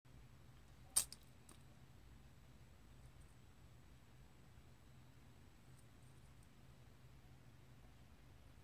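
Near silence: faint room tone with a low hum, broken about a second in by one sharp click and two fainter clicks right after it.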